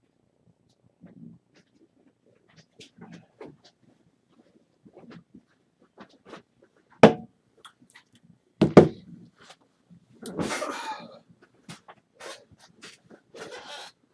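Handling noise near the microphone: faint low bumps and small clicks, two sharp knocks about seven and nine seconds in, then about a second of rustling.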